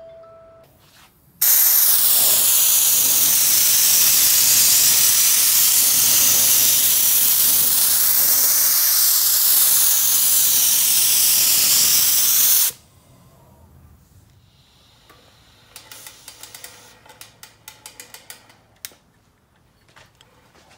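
Compressed-air paint spray gun spraying a coat of paint: one loud, steady hiss lasting about eleven seconds that starts and cuts off abruptly as the trigger is pulled and released. A run of faint clicks follows near the end.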